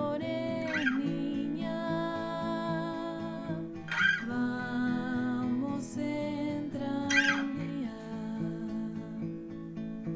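Acoustic guitar played solo, chords ringing and changing, with three brighter strums: about a second in, midway, and about seven seconds in.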